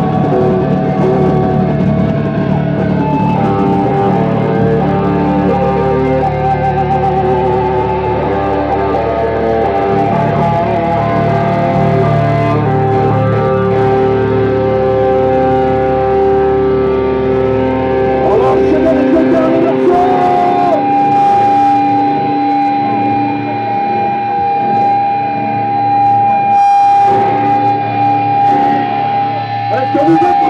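Electric guitars and bass of a live metal band ringing out long held notes through the amplifiers, the low bass dropping out about two-thirds of the way through and a single long sustained higher tone holding near the end.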